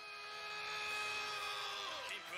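Faint sustained chord of several steady tones from the anime's soundtrack, swelling slightly and sliding down in pitch near the end.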